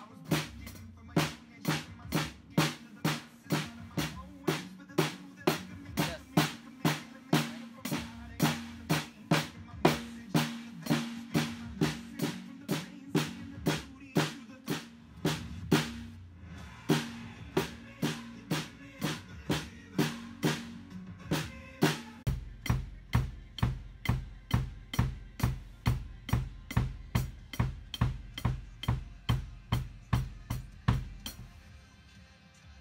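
Acoustic drum kit played along to a backing track: a steady beat of sharp strokes, about two a second, over a bass line. About two-thirds of the way through, heavy low beats come in and carry on to the end.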